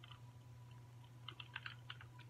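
Faint sips and swallows of a shake drunk from a glass: a few soft clicks in the second second, over a steady low hum.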